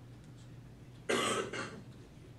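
A person coughing: one loud cough about a second in, followed at once by a weaker second cough.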